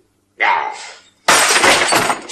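A glass bottle smashes on a hard floor about a second and a half in: a loud, sudden crash of breaking glass, followed by small pieces clinking as they scatter.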